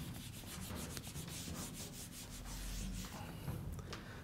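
Marker pen writing on a whiteboard: a quick run of short rubbing strokes of the felt tip across the board.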